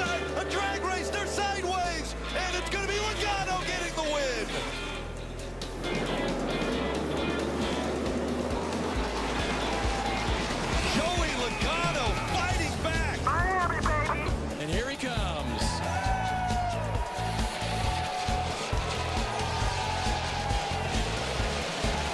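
Background music with a stepping bass line, with a voice over it.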